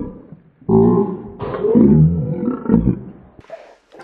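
A man making loud, low, drawn-out wordless vocal noises with food in his mouth, a hammed-up animal-like growl, lasting from about a second in until a little before the end.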